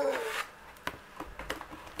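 A woman's short "mm", then faint handling noises: a few light clicks and rustles as items are moved about on a desk.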